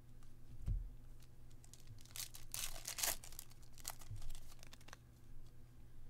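Stiff glossy trading cards handled and slid against one another by hand, with light clicks and a cluster of crisp scraping rustles about two to three seconds in.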